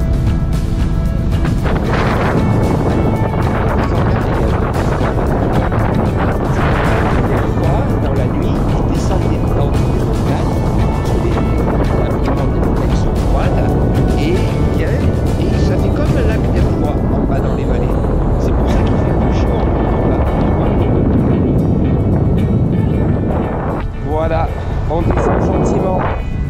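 Airflow buffeting the camera microphone in paraglider flight: a loud, steady low rush of wind noise.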